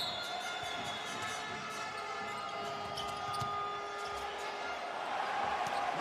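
Basketball game sound in a large arena: a steady crowd murmur with the ball bouncing on the court and scattered short knocks, a little louder near the end.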